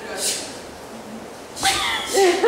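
Faint room noise, then near the end a person's short, high-pitched vocal cry with a wavering pitch.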